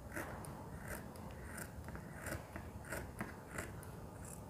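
Large dressmaker's shears cutting through fabric: a steady run of faint snips, about one every two-thirds of a second, as the blades close and reopen along a cutting line.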